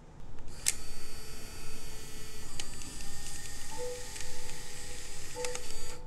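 Instant-camera shutter clicks, each followed by the camera's motor whirring as it pushes out the print. Soft piano notes come in about halfway through.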